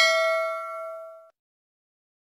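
Notification-bell 'ding' sound effect of a subscribe animation: one bright bell-like chime with several ringing overtones, fading and then cutting off about a second and a half in.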